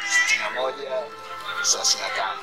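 A person's voice, speaking or laughing, over steady background music.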